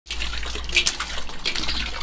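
Water leaking from a solar water-heating collector's pipe connection, running and splashing steadily onto the wet roof and into a plastic bowl. The leak is at a fitting whose copper sleeve has corroded.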